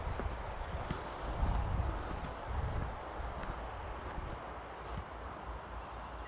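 Footsteps of a person walking over dry grass and forest floor, soft thuds at a steady walking pace.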